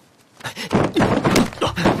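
Dull thuds of blows in a staged kung fu fight. Several come in quick succession, starting about half a second in.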